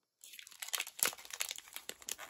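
Metallic foil snack wrappers crinkling as two packaged alfajores are turned over in the hands: a dense run of crackles that starts a moment in.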